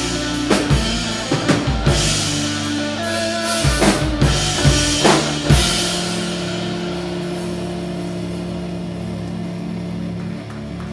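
Live rock band with electric guitars and a drum kit: busy drum hits and cymbal crashes up to about five and a half seconds in, then the drums stop and a held chord rings on and slowly fades, the close of a song.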